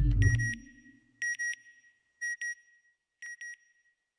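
Electronic double beeps, like a sonar or telemetry ping, repeating about once a second and growing fainter with each repeat. The last notes of a music track die away under the first beeps.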